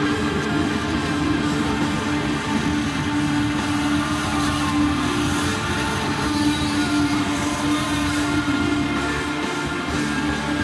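Live psychedelic rock band playing loud and continuously: electric guitar, bass, keyboards and drums, with a strong sustained note held under a dense, droning wall of sound.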